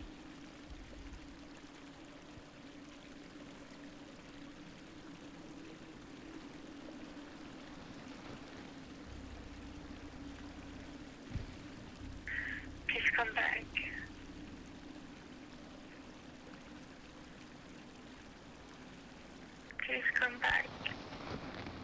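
A steady low hum under a faint even hiss, with a brief snatch of a voice about thirteen seconds in.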